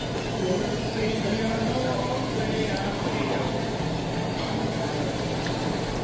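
Restaurant dining-room hubbub: a steady background murmur of other diners' voices and room noise.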